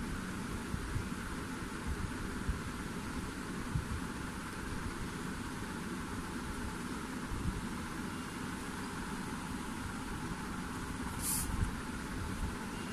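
Steady background rumble and hiss with a few soft low bumps, and a brief high hiss about a second before the end.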